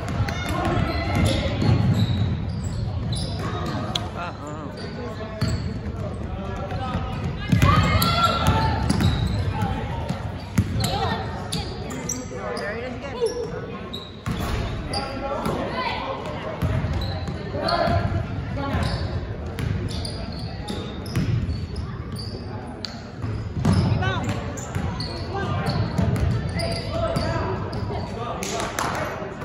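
Basketball bouncing on a hardwood gym floor during play, echoing in the hall, with indistinct voices of players and spectators calling out.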